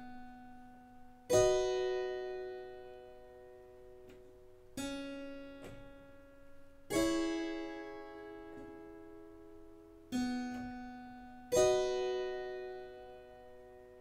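Keyboard playing figured-bass chord examples. Single notes and full chords are struck in turn, each left to ring and fade: a chord about a second in, then a note and a chord twice more, the bass note sounded ahead of its chord.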